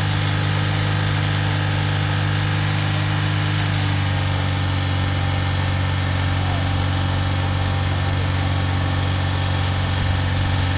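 Vauxhall Corsa engine idling steadily close up, running as the donor car to jump-start a car with a flat battery.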